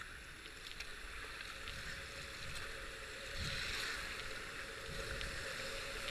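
Rushing whitewater of a river rapid, growing louder from about halfway through as the kayak closes on and enters it, with faint splashes and knocks from paddle strokes.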